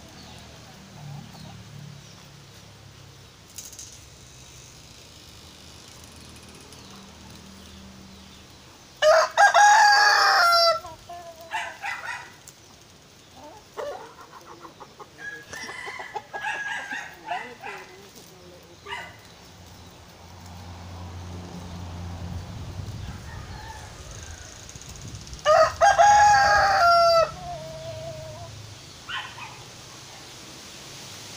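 Rooster crowing twice, about nine seconds in and again near the end, each crow lasting under two seconds. Between the crows, shorter broken calls of chickens clucking.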